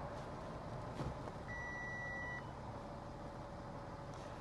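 A faint click, then a single steady electronic beep held just under a second from the 2015 Audi Q7's parking-aid system, as reverse is engaged to bring up the rear-view camera.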